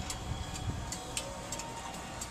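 Low background noise with a few faint, light clicks.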